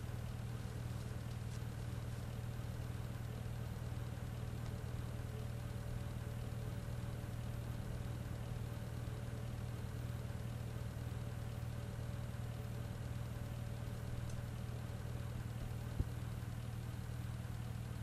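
Steady, low engine drone of a simulated military vehicle from a virtual-reality combat simulation's driving scene, played back over a hall's speakers. There is a single short click near the end.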